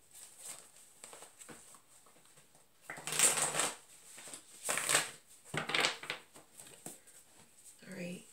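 A tarot deck being shuffled by hand in three or four short bursts, starting about three seconds in.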